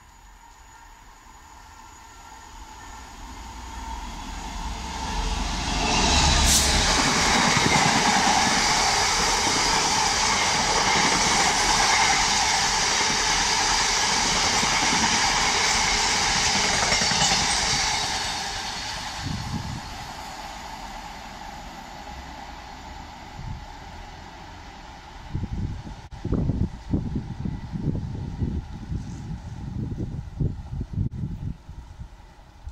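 A Class 66 diesel freight locomotive and its long train of open box wagons approaching and passing on the main line. The noise builds over the first six seconds, holds loud for about twelve, then fades as the train recedes. Irregular low thumps follow near the end.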